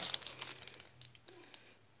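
Packaging crinkling as an item is handled and taken out of a box: a dense crinkle at the start, then a few sharp separate crackles that die away.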